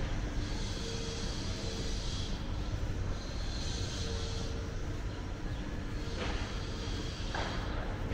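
City street background noise: a steady low rumble. Over it, a hiss with a faint hum comes and goes in roughly one-second stretches, and two brief sharp sounds come near the end.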